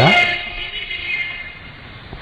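A man's amplified voice trails off at the start, leaving a sustained high ringing chord of several steady tones that fades away over about two seconds.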